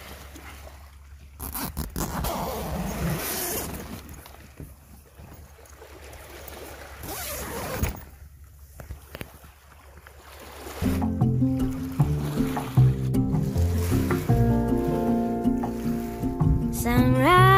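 Sea water washing and splashing with wind on the microphone, swelling and falling in surges. About eleven seconds in, instrumental music starts and becomes the loudest sound.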